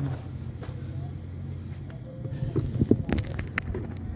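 A steady low hum, with a run of sharp clicks and knocks in the second half as a hooked rabbitfish flaps on the line and is handled against the rocks.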